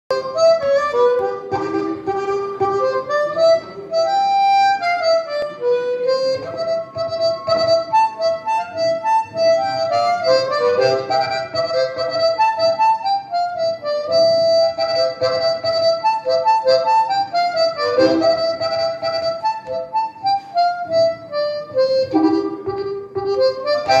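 Blues harmonica played live through a cupped hand-held microphone: a melodic solo line of held notes and bent, sliding notes.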